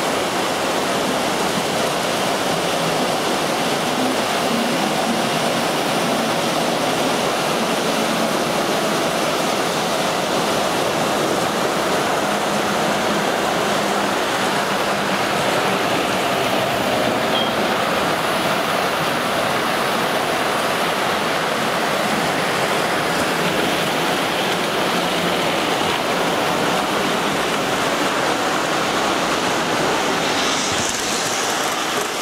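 MTH Premier O gauge streamlined passenger cars rolling along model track close by: a steady rushing rumble of metal wheels on rail that runs on evenly.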